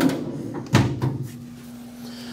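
Metal drawer under an RV oven pushed shut: it slides in on its runners and closes with a sharp knock about three-quarters of a second in, followed by a couple of lighter knocks.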